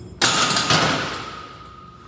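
Loaded barbell racked onto the steel hooks of a squat rack: two loud metal clanks about half a second apart, then a high ringing tone that fades away over a second or so.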